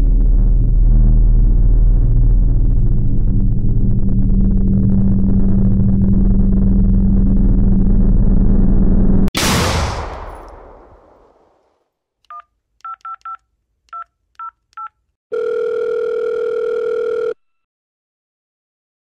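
A loud, low droning film-score drone cuts off suddenly about nine seconds in, into a sharp crash that fades away over about two seconds. After a short silence, seven touch-tone (DTMF) keypad beeps dial a phone number. A steady telephone ringback tone follows for about two seconds.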